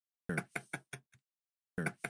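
Knocking: a quick run of about six sharp knocks, then the same run starting again near the end, in an identical pattern that repeats about every second and a half.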